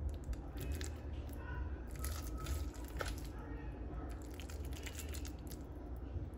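Cooked rice being spooned into a hollowed-out pineapple half: soft wet squishing and light scraping of the serving spoon against the fruit, in scattered small bursts.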